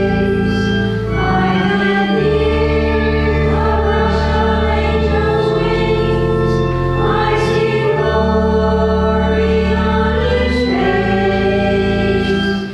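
A church choir singing a slow hymn over long held chords, the chords changing every second or two.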